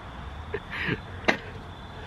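A man's short breathy laugh, then a sharp knock of the handheld camera being handled, over a steady low hum.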